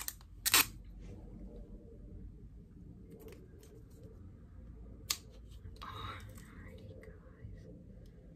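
Plastic packaging handled by hand: a sharp click about half a second in and another about five seconds in, with fainter ticks and a short stretch of rustling around six seconds.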